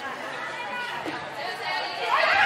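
Indistinct chatter and calls of players and spectators in a large indoor sports hall.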